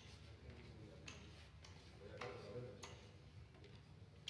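Near silence: faint room tone with a few soft, irregularly spaced clicks.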